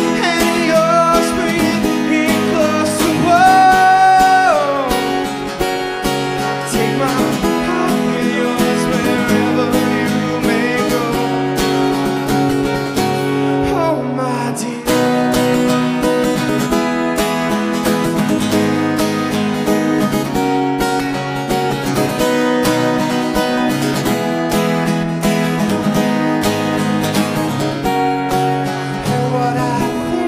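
Acoustic guitar strummed in a steady rhythm. A man's voice holds a long sung note that slides down about four seconds in, and the rest is guitar alone.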